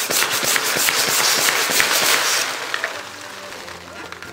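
Clear latex balloon with confetti inside being handled and pulled off a hand pump: a dense crackling rustle of rubbing latex and rattling confetti that dies down after about two and a half seconds.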